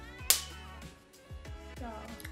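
A single sharp smack of a hand on a face about a third of a second in, the penalty for a missed answer. Quiet background music plays under it.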